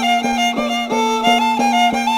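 Andean Santiago folk music: a violin playing a quick, ornamented melody over a small hand drum (tinya) beating about four strokes a second, with a steady held low note underneath.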